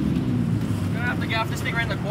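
Twin Yamaha outboard motors running steadily at low speed, a continuous low drone.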